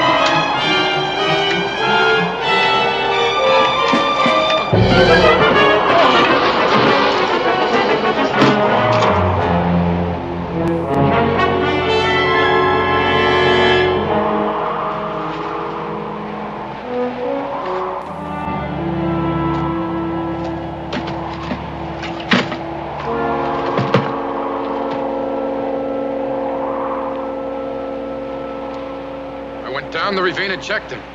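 Dramatic orchestral film score with brass, holding sustained chords that swell loudly about five seconds in, then settle into quieter held chords.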